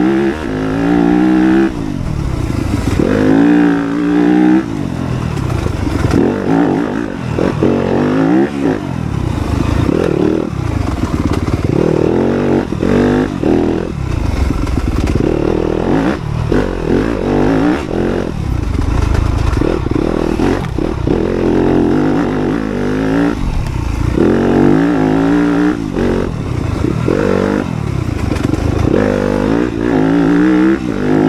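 Dirt bike engine revving hard and cutting back again and again, its pitch climbing and dropping every second or two as it is ridden over off-road terrain.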